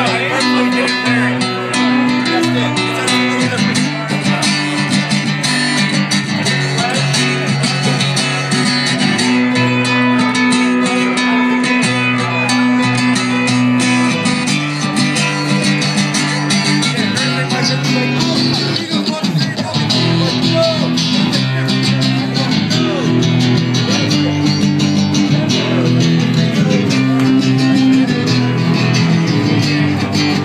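Live rock song played on strummed acoustic and electric guitars, with chords held and changing every second or two.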